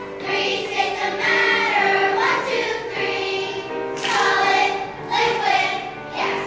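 Children's choir singing a song together, voices moving through held notes and phrases.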